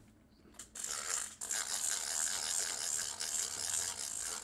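Plastic reel of a toy fishing rod being wound, a steady high whir that starts about half a second in, with a short break about a second and a half in.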